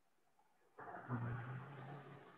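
After a moment of dead silence, faint background noise with a steady low hum comes in about a second in over a video-call microphone and slowly fades.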